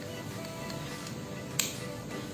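Background music with steady held notes, and one sharp plastic click about one and a half seconds in as the action camera's battery door is prised open.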